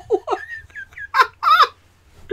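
People laughing: a high-pitched giggle in short, rapid bursts, then two louder bursts of laughter near the end.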